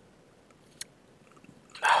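A pause in a man's speech: faint room tone with a single short click a little under a second in, then his voice starting again near the end.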